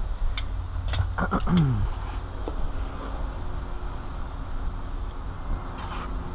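A few sharp clicks and clinks of hand tools being picked out of a tool tray in the first second or two, over a steady low rumble.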